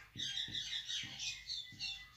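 Whiteboard marker squeaking in a run of short, high strokes as a word is handwritten on the board.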